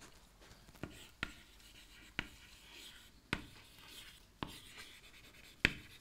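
Chalk writing on a blackboard: about six sharp taps as the chalk strikes the board, with faint scratching strokes between them.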